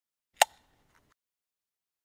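A single short, sharp pop sound effect a little under half a second in, with a brief fading tail.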